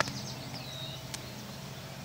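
Faint birdsong outdoors: high chirps and a short falling whistle in the first half second, over a steady low background noise. A single sharp click sounds a little past a second in.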